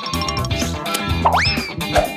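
Upbeat background music with a cartoon sound effect about a second and a quarter in: a quick rising glide in pitch that levels off and fades.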